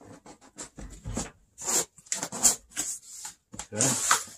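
Cardboard shipping carton handled with gloved hands: a string of short scrapes, rubs and taps as it is turned over, slid on a painted car panel, and its end flap is pulled open.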